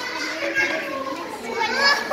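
Several young girls' voices chattering over one another, with one voice rising in pitch near the end.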